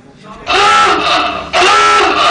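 Quiz countdown's time-up signal: two loud blasts about a second long each, the first starting about half a second in, marking that the answer time has run out.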